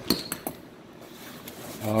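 Three light metallic clinks in the first half second, the first ringing briefly, as small metal brake line adapters are handled and set down among the kit's parts.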